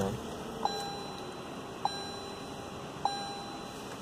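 Lexus ES350's electronic warning chime beeping three times, a little over a second apart, each steady tone running on into the next.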